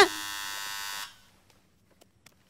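A steady electric buzz, about a second long, that cuts off suddenly.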